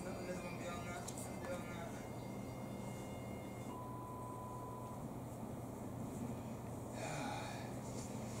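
A television playing in the room: faint voices and music over a steady low hum, with a single steady tone held for about a second midway.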